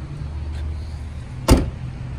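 A hatchback's rear liftgate slammed shut once, about one and a half seconds in: a single sharp bang over a steady low hum.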